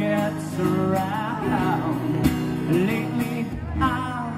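Acoustic guitar strummed in a live performance, with a man's voice singing a wavering melody over the chords.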